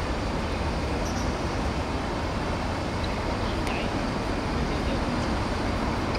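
Steady outdoor background rumble at a moderate level, with a faint click a little past the middle.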